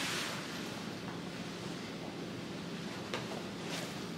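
Steady rustling of a faux-leather baseball jacket being pulled on over a cotton tee, with a brief click about three seconds in.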